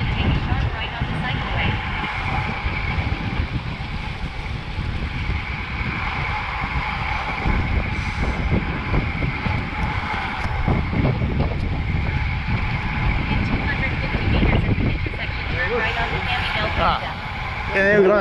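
Wind buffeting a moving bicycle-mounted camera's microphone while riding on a road, a continuous rumble with rushing noise. A voice comes in briefly near the end.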